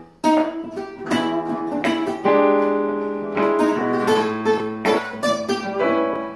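Guitar playing a blues progression in strummed chords and picked notes, with a chord ringing out about two seconds in: the opening bars of a 12-bar blues jam.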